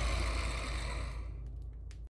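Intro sound effect: a deep rumble under a breathy hiss, fading steadily away.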